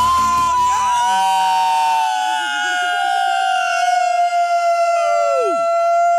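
A group of people shouting one long, held yell of triumph, the high note sliding slowly down in pitch; one voice trails off downward near the end while another keeps holding.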